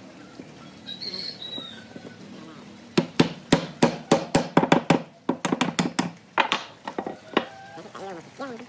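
Hammer or mallet knocking tapered wooden spindles down into the mortises of a wooden cradle frame: a fast, uneven series of sharp knocks that starts about three seconds in and runs until near the end.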